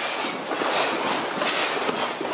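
Many karate students kicking fast at once: the swish and snap of their gi trousers and sleeves, a steady, dense clatter of overlapping snaps.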